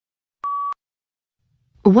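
A single short electronic beep: one steady mid-pitched tone lasting about a third of a second, marking the start of the next read-aloud passage. A voice starts reading just before the end.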